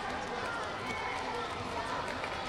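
Competition hall ambience: a steady wash of many distant voices, with scattered shouts from coaches and spectators.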